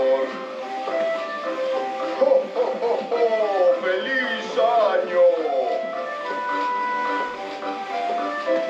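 An animated Santa Claus figure playing a Christmas tune through its built-in speaker, with a voice in it that glides up and down in pitch around the middle.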